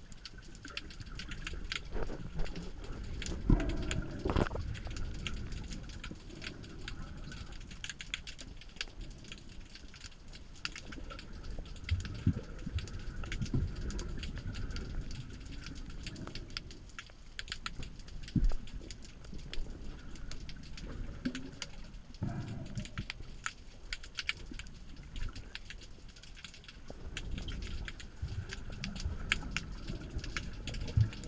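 Underwater sound in a kelp forest: a steady crackle of fine clicks over a low rumble of water movement, with louder low surges about four seconds in and again a little past twenty seconds.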